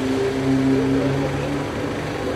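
A steady, constant-pitched hum of a vehicle engine running at idle over street background noise, weakening near the end.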